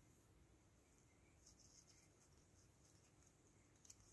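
Near silence: faint room tone with a faint rustle, and one soft click near the end as small scissors cut into a begonia leaf.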